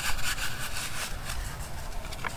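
Paper sliding and rustling as a collaged paper tag is pushed back into a pocket on a junk journal page, with hands rubbing over the paper. It is a continuous scratchy rustle with small clicks.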